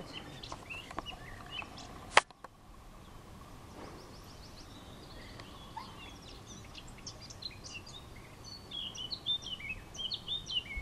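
Small songbirds chirping and twittering in the background, busier toward the end, with one sharp click about two seconds in.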